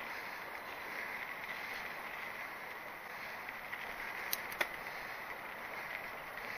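Mountain bike rolling along a dirt trail: a steady rush of tyre and wind noise, with two sharp clicks a little after four seconds in.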